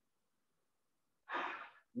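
Near silence, then near the end a short breath of about half a second from a man about to speak.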